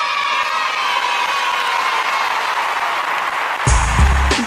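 Background music: a sustained wash of sound that fades slowly, then a hip-hop beat with heavy bass starts just before the end.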